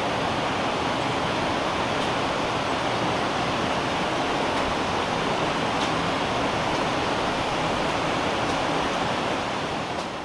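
A mountain creek rushing steadily, fading out in the last second.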